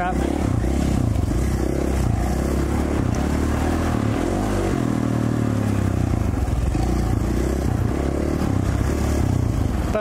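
2017 KTM 450 XC-F's single-cylinder four-stroke engine running steadily while the dirt bike is ridden, its pitch rising and falling a little with the throttle.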